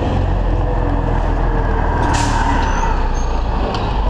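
City street traffic with a steady low rumble of vehicles, including a city bus, and a short hiss of air brakes about two seconds in.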